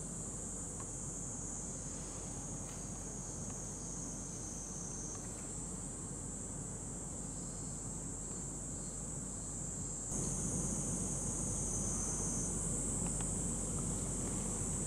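A steady, high-pitched insect drone over low background noise. It shifts slightly in pitch a couple of times and gets louder about ten seconds in.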